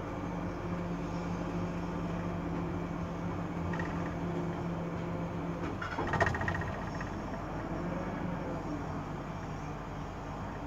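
Tower crane slewing, heard from inside its cab: a steady machine hum with a low tone that stops about six seconds in, then a brief, louder clatter with a high squeal.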